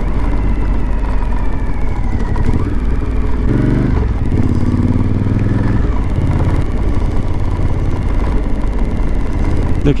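Suzuki V-Strom 1050's V-twin engine running as the motorcycle rides along at road speed, under a steady rush of wind and road noise. The engine note comes up more strongly for a couple of seconds in the middle.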